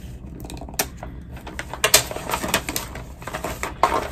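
Gift wrapping paper and a tape roll being handled: a run of irregular crinkles and clicks, a few sharper ones about two seconds in and near the end.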